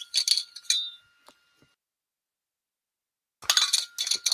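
Short clinks and knocks of a drink bottle being handled: a cluster of quick clinks in the first second, a gap of silence, then another cluster about three and a half seconds in.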